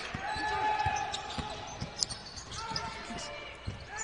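Basketball court sound: a basketball bounced on the hardwood floor, with irregular thumps over a low background of the gym.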